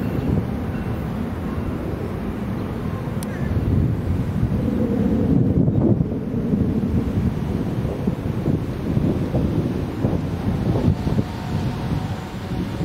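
Wind rumbling on the microphone, mixed with the low rumble of a Tri-Rail commuter train passing; louder around four to six seconds in.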